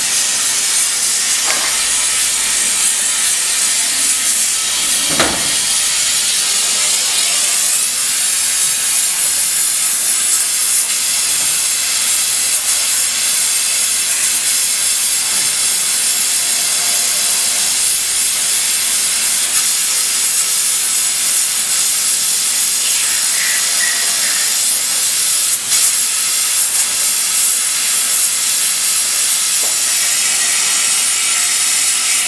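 Okuma Howa 2SP-35H twin-spindle CNC lathe running, giving a loud, steady hiss with a faint machine hum under it. A single sharp knock comes about five seconds in.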